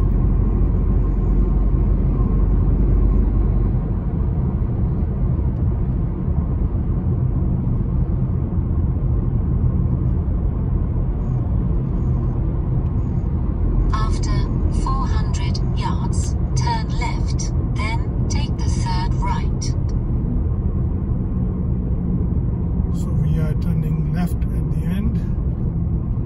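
Steady low rumble of engine and tyre noise inside a car's cabin on the move. A voice speaks briefly about halfway through and again faintly near the end.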